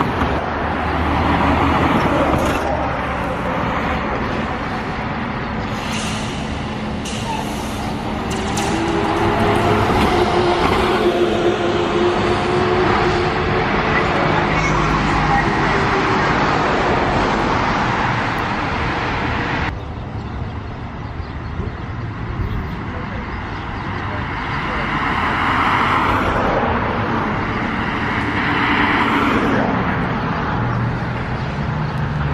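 Street traffic as New Flyer electric trolleybuses and cars pass, a steady road rumble with a pitched hum that rises and falls near the middle. The sound drops off abruptly about two-thirds of the way through, then builds again.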